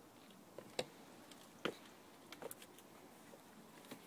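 A Bedlington terrier's paws crunching in fresh snow: a few faint, sharp crunches, the two loudest about a second apart, then a brief cluster of smaller ones.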